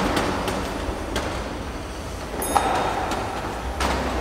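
Black metal folding chair dragged across a tiled floor: a continuous scraping rumble with a few knocks and a short squeak about halfway through.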